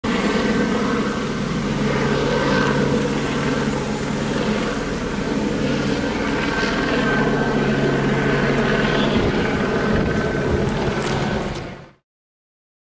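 Steady drone of a running vehicle engine with street background noise, fading out just before the end.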